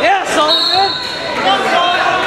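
Coaches and spectators shouting over each other in a gymnasium during a wrestling bout, with a steady high-pitched tone running through from about half a second in.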